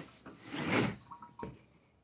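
A metal sauna steam generator cabinet being turned around on a table: a brief scuffing slide followed by a single light knock.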